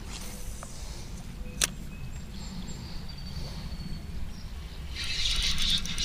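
Creek-side outdoor ambience: a steady low rumble of wind or flowing water, with a few faint thin bird calls. One sharp click comes about a second and a half in, and a louder hiss builds from about five seconds.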